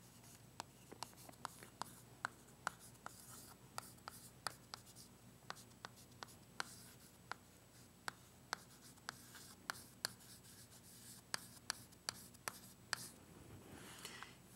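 Chalk writing on a chalkboard: an irregular run of faint taps and short scratches as an equation is written out stroke by stroke.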